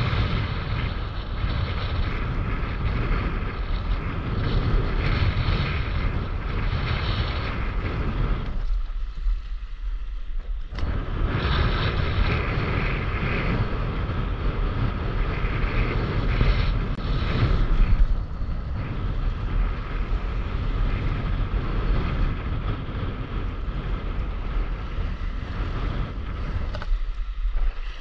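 Steady, loud wind buffeting an action camera's microphone just above choppy sea, mixed with water washing around the board. The sound briefly goes dull about nine seconds in.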